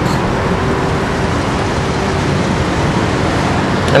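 Steady outdoor traffic noise: an even, unbroken rushing hiss, with a faint steady hum during the first half.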